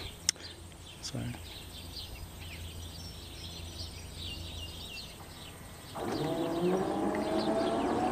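The electric PTO motor of an electric-converted David Brown tractor starts about six seconds in and spins up, its whine rising steadily in pitch. Before it starts, birds chirp faintly.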